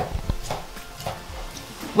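Kitchen knife slicing poached chicken breast on a wooden cutting board, with a few light taps of the blade on the board.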